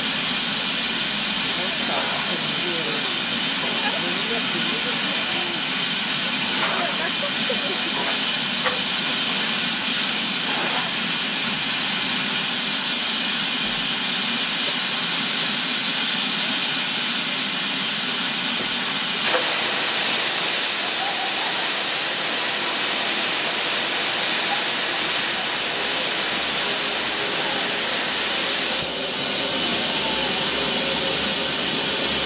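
Steady hiss of steam from a standing BR Standard Class 4MT 2-6-0 steam locomotive, number 76079. The hiss grows louder and brighter about two-thirds of the way in, then drops back shortly before the end.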